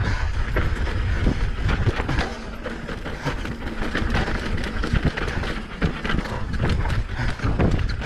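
Downhill mountain bike rolling fast over loose dirt and rocks: tyres crunching, the bike rattling, with many sharp knocks. Wind rumble on the helmet-mounted microphone runs underneath.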